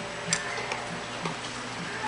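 Chow Chow puppy eating wet food from a stainless steel bowl: soft, regular chewing clicks about twice a second, with a sharper click about a third of a second in.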